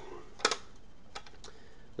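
A few light clicks in quiet room tone: a sharp double click about half a second in, then two fainter clicks a little under a second later.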